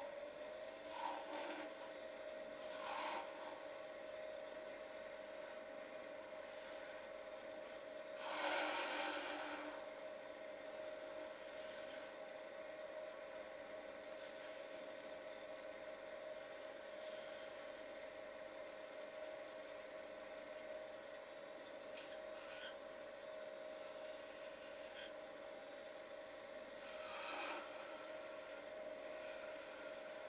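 Wood lathe running with a steady whine at about 2700 rpm while a gouge cuts the paper body of a pencil to a point. The scraping cuts come and go, with short ones near the start, the longest about eight seconds in, and a few more later.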